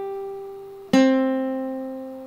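Classical guitar playing single plucked notes: a high note rings and fades, then a lower note is plucked about a second in and rings on, slowly decaying.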